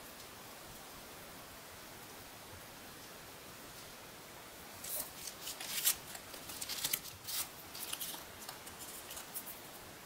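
A faint steady hiss for about the first half. Then, from about halfway, irregular crisp rustles and crackles of sheets of cardstock and a paper template being picked up and handled.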